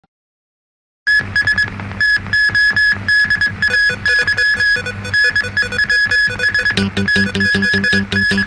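Electronic news-bulletin opening theme music that starts suddenly about a second in, with a high repeated beeping tone over a fast beat. A deeper bass part joins near the end.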